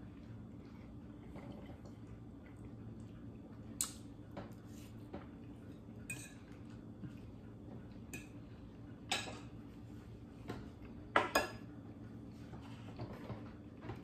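Knife and fork clinking and scraping against a dinner plate in scattered, irregular taps, the loudest a quick pair near the end, over a faint, steady low hum.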